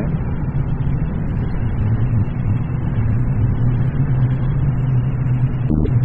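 Yamaha XJ1100 Maxim's air-cooled inline-four engine running at a steady cruise, with wind and road noise over it. A short knock comes near the end.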